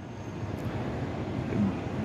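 Steady background noise with no distinct event, faintly rumbling and hissing, in a pause between spoken phrases.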